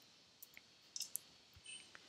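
Faint clicks of a computer keyboard: a few separate keystrokes.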